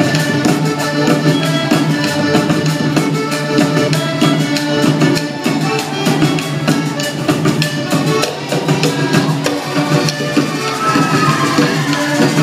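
Live Panamanian folk band music: accordion and violin playing a melody over a steady, quick drum beat.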